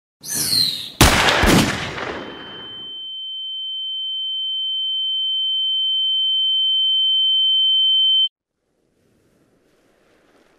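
A single pistol gunshot about a second in, with a reverberating tail, followed by a steady high-pitched ringing tone like ears ringing after a shot. The tone grows gradually louder, then cuts off suddenly near the end.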